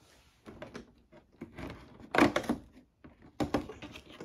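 Fingers scratching at and tearing open the cardboard door of an Alverde advent calendar: scattered scrapes and small rips, loudest a little past two seconds and again about three and a half seconds in.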